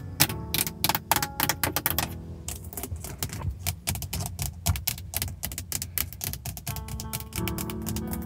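Fingernails tapping quickly on a car's plastic dashboard trim and stereo face, then on the Hyundai steering wheel's hub cover: a fast run of light clicks, densest in the first two seconds. Soft spa music plays underneath.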